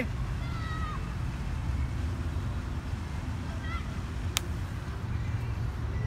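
A single sharp click about four seconds in, a putter striking a golf ball on a miniature golf tee, over a steady low outdoor rumble with faint distant voices.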